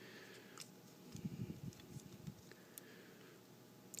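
Faint handling of a small plastic action figure: a few light clicks and some soft rubbing as plastic parts are fitted together.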